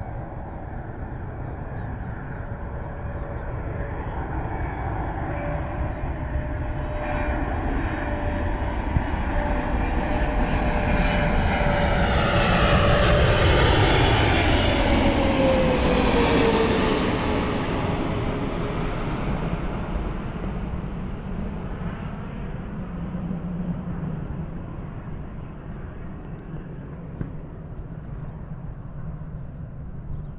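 Boeing 777-300ER's twin GE90 turbofans at approach power, growing louder as the airliner passes low overhead about halfway through. Its engine whine drops in pitch as it goes by, then the sound fades as it descends toward the runway.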